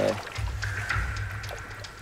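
Background music of sustained low notes and a held higher tone, with faint trickling of shallow stream water beneath.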